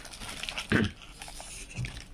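Rustling of a cotton drawstring bag being handled, with a brief low voice-like sound about three quarters of a second in and a fainter one just before the end.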